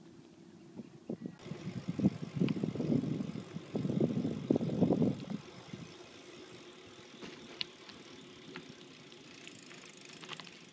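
Bicycle being ridden over rough ground, heard through its handlebars: a few seconds of loud, irregular rumbling and knocking, then quieter steady rolling with a few light clicks.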